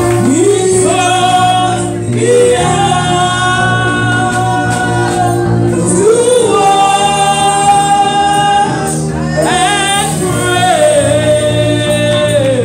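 Women singing a gospel song together into microphones, holding long notes of a few seconds each, over a steady low tone.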